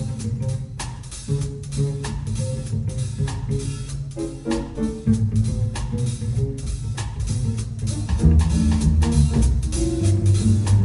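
Live jazz combo playing: drum kit with cymbals keeping time under an upright bass line and guitar.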